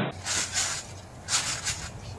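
Someone bouncing on a trampoline: a hissing rustle with each bounce, repeating about once a second.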